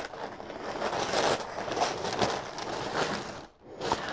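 Tissue paper rustling and crinkling as a soft package is unwrapped by hand, with a short pause about three and a half seconds in.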